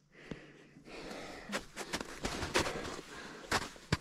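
Footsteps in snow with a winded hiker's heavy breathing, several sharp steps over a few seconds.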